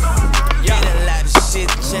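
Skateboard wheels rolling on concrete, with a hip-hop track and its heavy bass line playing over them.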